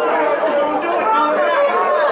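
A man talking continuously in a comic monologue.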